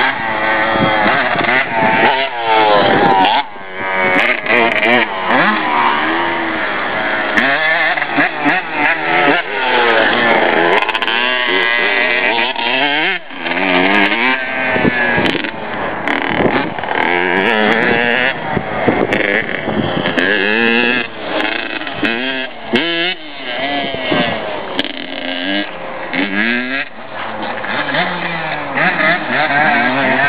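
Dirt bike engine revving hard and easing off again and again as it rides the track, its pitch climbing and dropping with each throttle blip and gear change.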